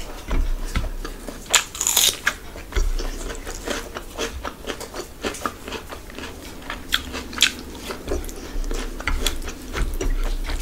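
Close-miked chewing and biting of rice and chicken curry eaten by hand, with irregular crunchy clicks and mouth noises, and the wet squish of fingers mixing rice into the curry on the plate.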